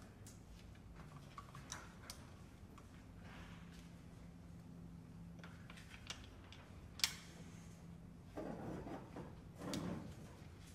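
Very quiet contemporary chamber playing from clarinet and cello: a faint held low tone, scattered soft clicks, and a short breathy rush of air in the last second or two.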